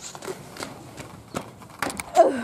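Irregular light footsteps and taps on paving, a few sharp clicks spread unevenly, with the loudest cluster near the end.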